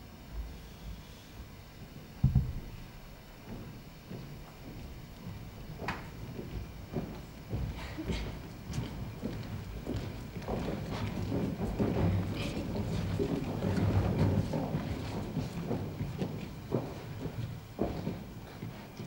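Footsteps and shuffling of a group of people walking onto a stage and taking their places, with one thump about two seconds in; the irregular footfalls grow busier in the second half.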